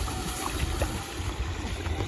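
Steady outdoor background noise, mostly a low wind rumble on the microphone.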